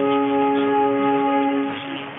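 Music from the DR longwave AM broadcast on 243 kHz from Kalundborg, heard through a Perseus SDR receiver: a chord of several long held notes, with the narrow, muffled sound of AM audio. It fades away just before the end.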